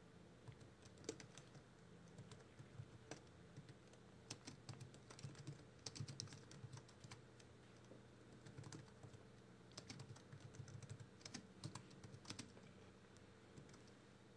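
Faint typing on a computer keyboard: quick clusters of key clicks with short pauses between them, over a low steady hum.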